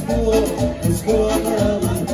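Band playing upbeat Latin dance music, with a bass line repeating in a steady rhythm under the melody.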